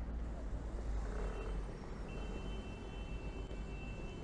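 City street traffic at a busy intersection: cars passing with a steady low rumble. A thin, steady high-pitched tone joins about two seconds in.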